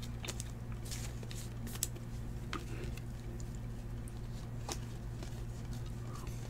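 Trading cards being handled and gathered into stacks, with a few faint soft clicks and rustles of card on card over a steady low hum.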